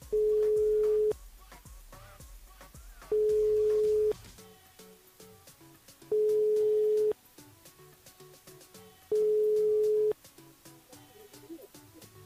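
Telephone ringback tone on an outgoing call: a steady mid-pitched beep about a second long, sounding four times about three seconds apart while the called phone rings unanswered. Faint background music plays underneath.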